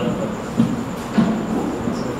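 A microphone handled and fixed to a stand: rubbing and two low bumps picked up by the mic, over steady hall noise.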